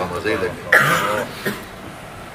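A man's voice trails off. About three-quarters of a second in comes one loud, harsh cough, followed by a smaller throat-clearing sound about a second and a half in.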